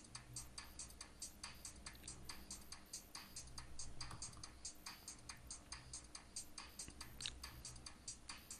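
Faint, even ticking, about four ticks a second, over a low hum.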